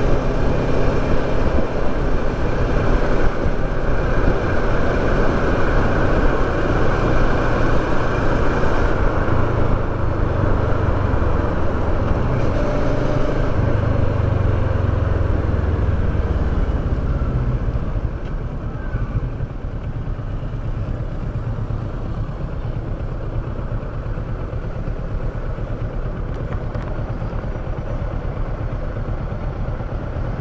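Kawasaki Versys 650 parallel-twin motorcycle engine and wind rush heard from the rider's helmet-mounted camera while riding. The sound is loud and steady for the first half, then drops noticeably about two-thirds of the way through as the bike slows and comes to a stop at a red light.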